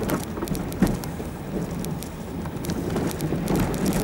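A vehicle driving over a rough dirt track, heard from inside the cabin: a steady low rumble with many small clicks and knocks, and one louder knock a little under a second in.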